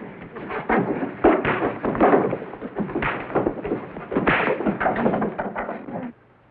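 A fistfight: a rapid, irregular run of thuds, bangs and scuffling as blows land and bodies knock into furniture. It stops abruptly at the end.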